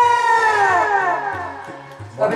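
A man's long held vocal note, sung or cried out, that slides steadily down in pitch and fades away over about two seconds, over a low repeating beat.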